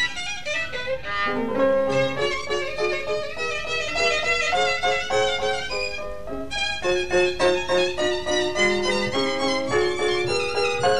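Solo violin playing a violin concerto with piano accompaniment, the notes moving several times a second over lower held notes.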